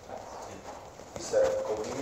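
A voice speaking, starting about a second in after a brief lull of faint room noise.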